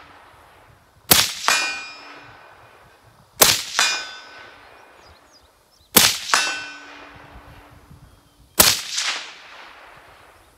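Four rifle shots about two and a half seconds apart. Each is followed a fraction of a second later by the ringing clang of a hit on a distant steel target.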